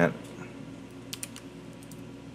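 A few light computer keyboard keystrokes, clicking about a second in and again near the end, over a low steady hum.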